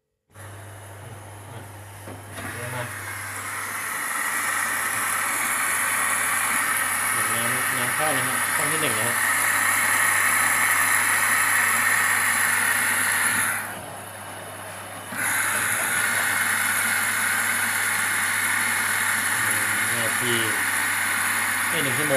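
Electrolux EWF10741 front-loading washing machine filling through its detergent drawer: a rush of water with a steady low hum that builds over the first few seconds. The rush drops out for about a second and a half past the middle, then comes back.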